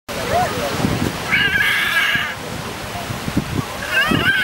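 A California sea lion gives one wavering, meow-like call about a second long, a little after the start, over a low, uneven rumble of waves on the rocks.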